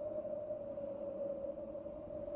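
A single steady held tone, a sustained note of background music, with no other sound over it.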